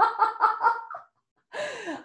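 A woman laughing in a quick run of short pulses, which stops about a second in; after a brief pause comes a breathy intake of breath near the end.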